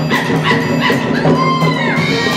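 A school wind ensemble playing: brass and woodwinds with percussion strokes. A high held note bends downward near the end.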